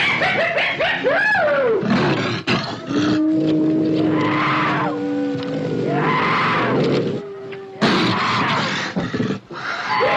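Film soundtrack of wild animal snarls and roars, with gliding howls at the start and three rough roaring bursts later on, each about a second long, over long held notes of orchestral music.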